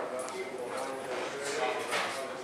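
Indistinct chatter of several voices in a room, with a short sharp knock right at the start.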